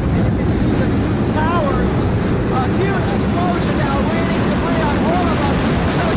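A loud, steady low rumble of engines, with scattered voices of people nearby talking over it.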